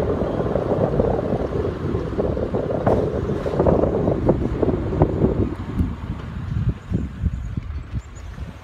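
Wind buffeting the microphone over the road noise of a slowly moving car; the rumble eases about five and a half seconds in.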